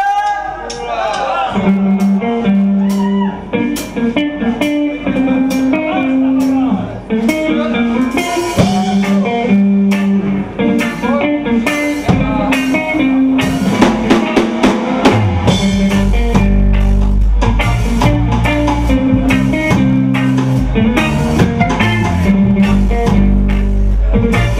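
Live reggae band playing: electric guitars and drum kit, with a heavy bass line coming in about two-thirds of the way through.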